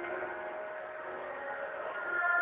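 Live choir music from an outdoor performance, softer here with faint held notes, swelling again at the end.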